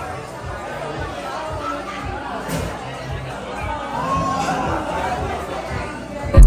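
Busy restaurant dining room: many people talking at once in a steady hubbub, with music playing underneath.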